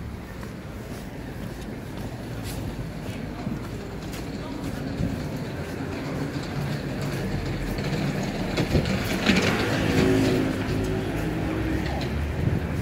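City street ambience: a steady low rumble of road traffic that grows louder as the junction comes near, with people's voices close by for a couple of seconds near the end.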